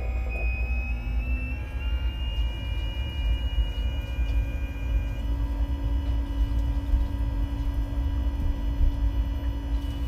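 Hooker seawater pump running steadily, a deep rumble with a thin whine on top that climbs slightly in the first few seconds, and water rushing through it: it is moving a strong flow of seawater from the new sea chest to the air-conditioning manifold.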